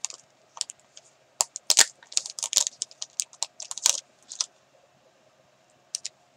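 A sheet of gold foil word stickers crackling and rustling in the hands as a small 'joy' sticker is peeled off its backing. It is a run of quick, crisp crackles that stops a little after four seconds in.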